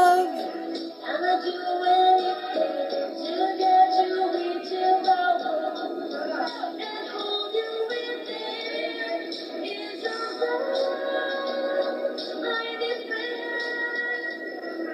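Singing over backing music, played back thin and tinny through a computer's speaker, with no bass or treble.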